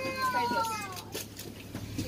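A child's high-pitched, drawn-out shout that falls in pitch over about a second, among other passengers' voices and the steady low hum of the bus.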